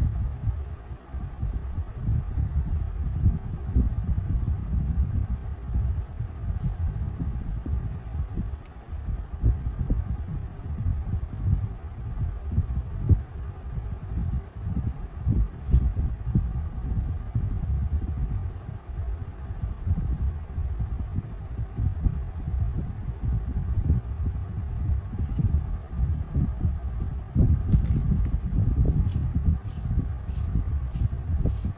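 Wax crayon rubbed on paper in quick back-and-forth colouring strokes, heard as an uneven low scrubbing rumble, with a few sharp clicks near the end.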